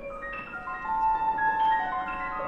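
Grand piano played in its upper register: a new attack at the start, then bright notes struck one after another, each left ringing under the next.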